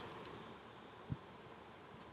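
Near silence: faint room hiss, with one short, soft low thump about a second in.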